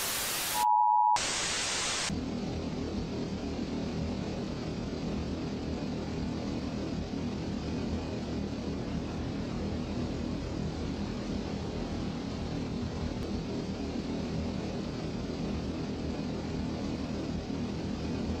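A burst of TV static with a short beep in the middle of it for about the first two seconds, then the Hypnotoad's steady droning hum.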